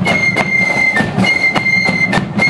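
Marching flute band playing: massed flutes holding a long high note that breaks briefly about a second in, over steady drum beats about three a second.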